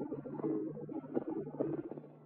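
Flamenco recording from a 1952 78 rpm shellac disc: held, wavering pitched notes, most likely a male cantaor's voice over guitar, in dull sound with no high end. There is a short break near the end.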